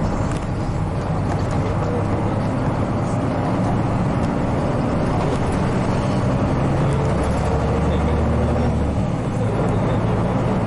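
Hino Blue Ribbon KC-RU1JJCA route bus heard from inside the cabin while driving: a steady diesel engine note over road and running noise, with a brief dip in level about nine seconds in.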